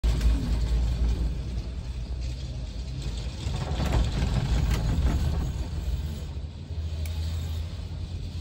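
Gondola cabin travelling along its cable, heard from inside: a steady low rumble with a few faint knocks about halfway through.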